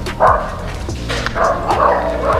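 A dog barking and yipping in several short bursts.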